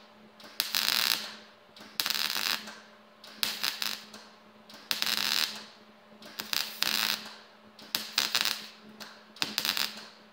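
MIG welder arc crackling in short stitches, about one burst a second with brief pauses between, as it fills and closes the tip of a steel hook.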